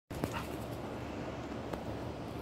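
A dog making brief sounds over a steady background hiss, with a short sharp sound near the start and another near the end.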